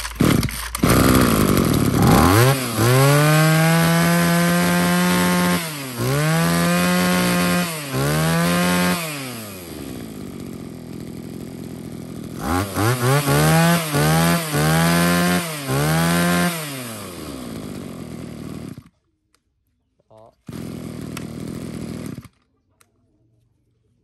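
Mitsubishi TB26 two-stroke brush cutter engine pull-started, catching about two seconds in, then revved up and let back to idle several times, with a quick run of throttle blips in the middle, before it is switched off. It runs smoothly, in the seller's words still lively and quiet.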